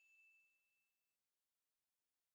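Near silence: the last faint ring of a single bell-like ding, a steady high tone that dies away within the first second, then complete silence.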